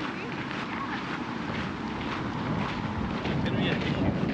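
Wind blowing on the microphone, with faint voices of people talking as they walk closer near the end.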